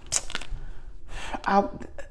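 A brief rustle and a few light clicks of card stock as a heart-shaped oracle card is drawn and held up, then a woman's voice begins about two-thirds of the way in.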